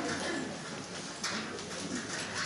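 Murmur of a seated audience talking quietly among themselves in a hall, with a few light knocks and clicks.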